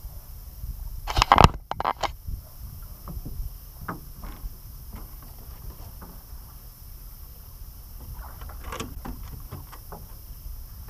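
Water splashing beside the boat as a hooked rainbow trout is brought to the landing net: a loud burst of splashes about a second in and another near the end, with light knocks between and a steady low rumble underneath.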